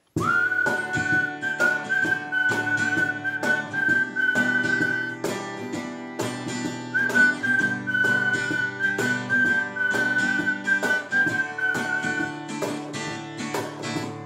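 Whistled melody over a strummed acoustic guitar and a hand-played cajon beat, the instrumental intro of a song. The whistling comes in two long phrases, the second starting about seven seconds in and ending about twelve seconds in, while the guitar and cajon keep going.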